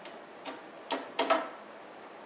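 A screwdriver and loose screws make several sharp, irregular clicks and taps against the metal case of a TiVo Series 2 DVR while its case screws are being taken out. The loudest two clicks come close together a little past the middle.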